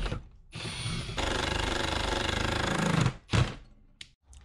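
Cordless drill with a step bit boring through a steel bracket plate, opening a hole to 3/8 inch for an M6 rivet nut. It runs steadily from about half a second in and stops about three seconds in, followed by one short burst.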